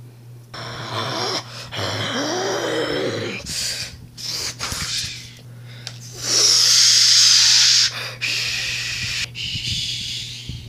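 A child's voice making breathy, wordless noises, its pitch swooping up and down in the first few seconds, then turning to hissing, loudest in a long hiss about six seconds in.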